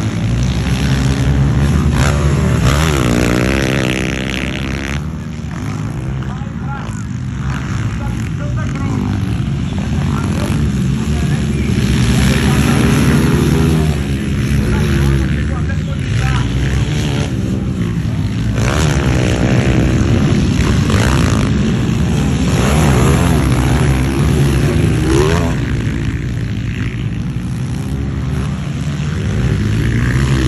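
230cc dirt bikes racing on a motocross track, their single-cylinder engines revving up and down through the gears as they pass, with the pitch rising and falling again and again.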